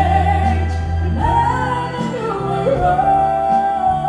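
Live symphony orchestra accompanying a singer, with sustained sung notes over the strings and a long held note near the end.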